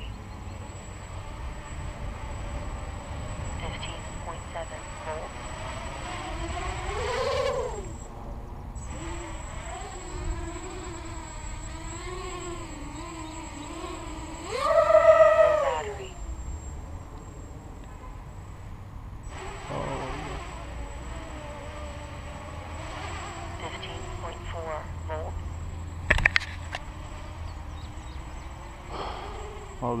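Quadcopter's brushless motors and propellers whining overhead on a 4S battery, the pitch rising and falling with the throttle. About halfway through, a hard throttle burst sends the whine sharply up and loud before it falls away. A sharp click comes near the end.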